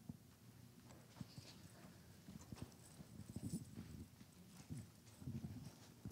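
Faint, irregular low thumps and rustles of a handheld microphone being handled as it is passed from one person to another.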